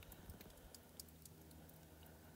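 Near silence: faint outdoor quiet with a few scattered soft ticks.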